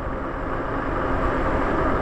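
Steady rushing noise of riding a fat-tire e-bike on asphalt: wind on the microphone and the wide tyres rolling, with a faint steady hum underneath, growing slightly louder.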